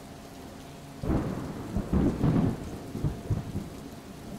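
Steady rain, then about a second in a deep rumble of thunder that swells and fades in uneven waves, dying away near the end.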